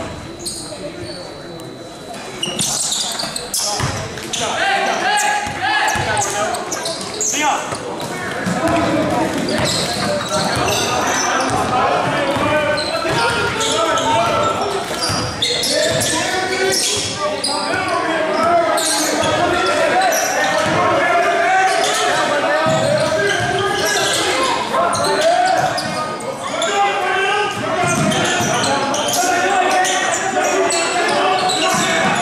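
A basketball bouncing on a hardwood gym floor amid players' voices and shouts, echoing in a large gym. It grows busier and louder after the first several seconds as play resumes.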